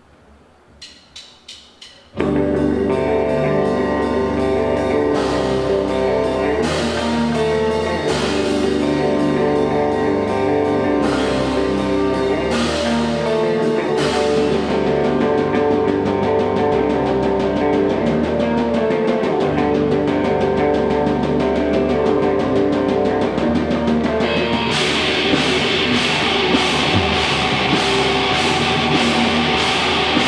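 A live metal band with electric guitars, bass and a drum kit starting a song. A few short clicks come about a second in, then the full band crashes in loud about two seconds in and plays on. Near the end the sound turns brighter and harsher.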